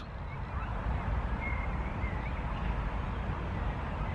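Outdoor background noise: a steady low rumble with a faint, brief high bird call about a second and a half in.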